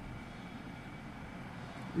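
Quiet pause with a faint, steady background hiss and the light sound of a ballpoint pen writing on paper.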